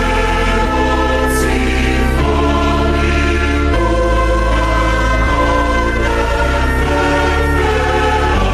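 A choir singing a hymn in slow, sustained chords that change about every second.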